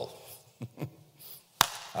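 A single sharp knock about one and a half seconds in, after a couple of fainter ticks, in a pause between phrases of speech.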